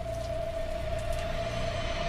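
Movie trailer sound design: a single steady tone held over a low rumbling drone.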